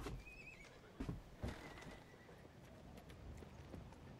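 Quiet room tone with a few soft thuds and a brief, faint wavering call near the start.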